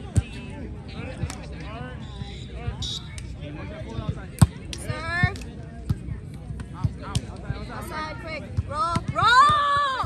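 Volleyball rally on grass: sharp smacks of hands striking the ball, the sharpest a little before halfway, over players and onlookers calling out. A loud shout near the end.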